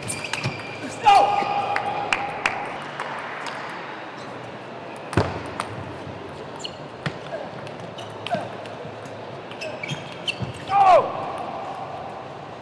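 Table tennis ball ticking in short sharp clicks as it is bounced on the table and struck, with a loud falling squeal about a second in and again near the end.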